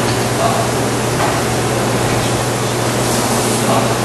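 Steady hiss with a low, even hum under it: lecture-room background noise with no speech.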